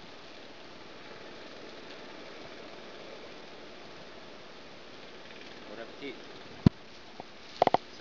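Steady outdoor background hiss. Near the end comes one loud sharp click, a smaller one, then a quick loud double click as the plastic bag is handled.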